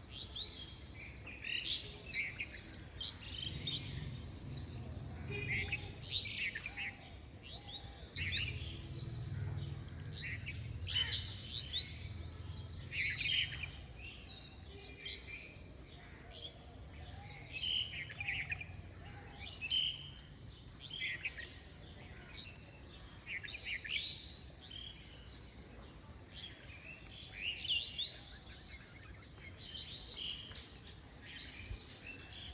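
Small birds chirping: short, high calls repeated every second or so. A faint low hum sits underneath at times.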